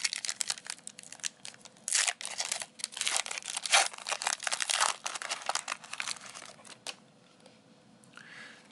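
Foil wrapper of a Score 2020 NFL trading card pack being torn and peeled open by hand: a run of irregular crinkling, crackling tears that dies away about seven seconds in.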